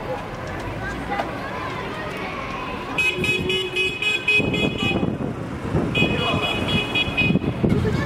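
Bicycle bells ringing in fast repeated trills, starting about three seconds in and again about six seconds in. A vehicle horn sounds under the first ringing for just over a second. Children's voices can be heard throughout.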